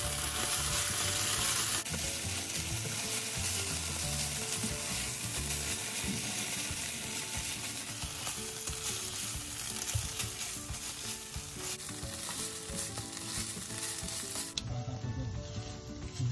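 Thinly sliced beef tapa frying in oil in a pan, sizzling steadily, with soft background music under it. The sizzle drops away near the end.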